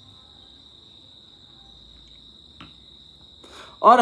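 Steady, unbroken high-pitched trill of an insect in the background, with one soft click about two and a half seconds in; a voice starts right at the end.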